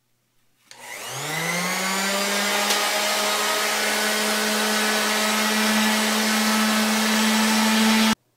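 Electric random orbital sander switched on about a second in, its motor pitch rising as it spins up, then running steadily as it sands the cured sealer on a concrete countertop edge to prepare it for re-coating.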